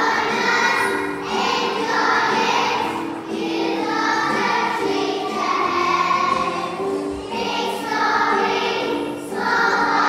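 A group of young children singing together as a choir, in phrases of a second or two.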